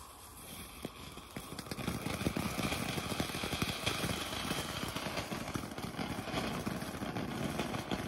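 Ground firework fountain spraying sparks: a steady hissing rush with fine crackling that starts about a second in and builds to full strength over the next second.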